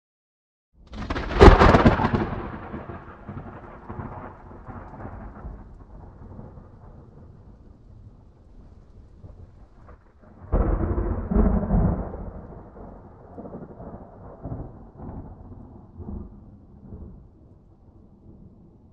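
Two long rolls of thunder: the first breaks suddenly about a second in and dies away slowly over several seconds, the second comes about ten seconds in and fades out the same way.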